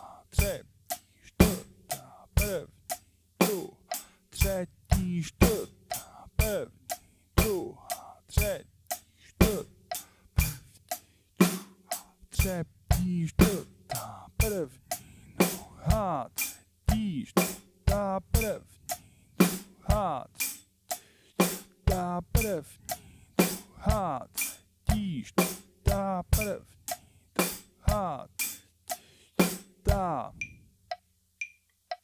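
Acoustic drum kit (Pearl drums, Zildjian cymbals) playing a slow, steady rock groove at about 60 beats per minute: accented eighth notes on the hi-hat over bass drum and snare, with the hi-hat pedal worked on the accents.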